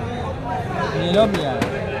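Men talking and calling out over the steady background noise of a large crowd, with two short sharp knocks about a second and a half in.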